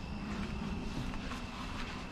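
Quiet outdoor background: a steady low rumble with the faint, continuous high trill of crickets.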